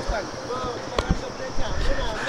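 People talking in the background over a low rumble, with a single sharp click about a second in.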